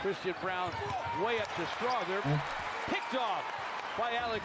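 Basketball sneakers squeaking on a hardwood court: many short, overlapping squeaks that rise and fall in pitch as players run and cut, with a ball bouncing.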